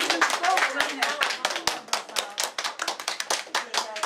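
A small group of people clapping their hands, many quick irregular claps overlapping, with voices mixed in.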